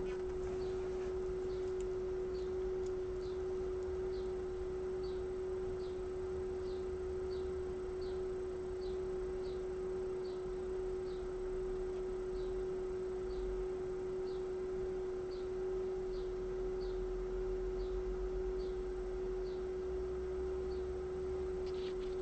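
A steady pure tone held at one middle pitch, with no change in level. Faint short high chirps repeat above it about every three-quarters of a second.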